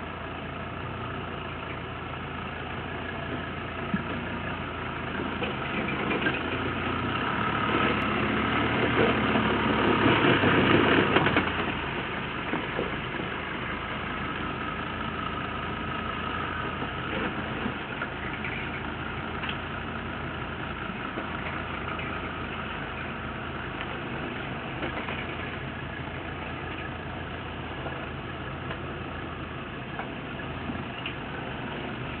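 Toyota Land Cruiser 70-series diesel engine running at low revs under load as the truck rock-crawls up a ledge. It swells louder from about six seconds in, peaks around ten to eleven seconds, drops off suddenly, then runs on steadily.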